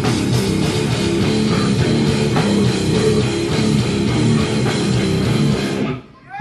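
Live death metal band playing loud, with a dense distorted electric guitar riff over drums, the whole band stopping abruptly right at the end.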